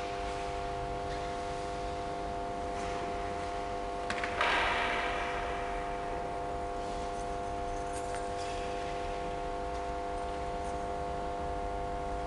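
A steady hum of several held tones throughout. Over it come faint clicks and small clinks of altar vessels being handled, with one louder clattering rustle about four seconds in that fades over a second or two.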